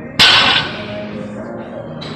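A 135-lb barbell with rubber-coated plates set down on the gym floor about a quarter second in: one sharp clank with a short metallic ring that fades within half a second. Music plays steadily underneath.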